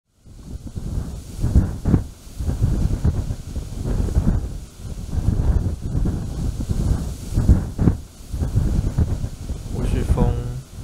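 Wind gusting across the microphone: a low rumbling rush with a hiss above it, swelling and easing every second or two.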